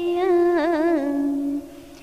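A voice chanting a line of Hòa Hảo Buddhist verse in the drawn-out Vietnamese recitation style, holding the line's last word as one long wavering note. The note steps down in pitch about a second in and fades out before the end.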